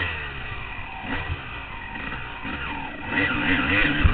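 Honda CR250 two-stroke dirt bike engine revving up and down again and again as the throttle is worked on the trail, getting louder near the end.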